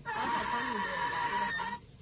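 A loud, shrill cry held for about a second and a half, then cut off abruptly.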